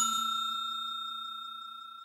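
A bell-like chime sound effect for a notification bell, ringing out after being struck and fading steadily, with a slight fast pulsing.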